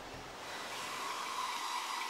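A faint, steady hiss.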